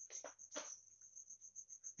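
A cricket chirping in the background, a faint, even train of high pulses several times a second, with a few soft pen strokes on paper in the first half-second.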